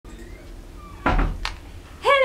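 A dull thump about a second in, then a short click, over a faint steady low hum.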